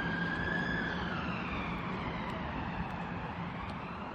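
Emergency-vehicle siren wailing, its pitch rising and falling slowly.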